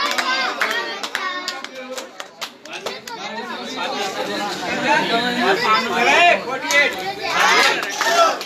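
A group of children talking and calling out over one another, with scattered hand claps in the first second or so. The voices grow louder toward the end.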